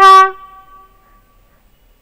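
Speech only: a woman says one word at the start, its tone fading away over about a second, then quiet.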